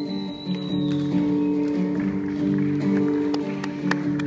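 Acoustic and electric guitars playing the instrumental intro of a song live, heard from the audience in a concert hall. A thin high whistle sounds over the guitars in the first second.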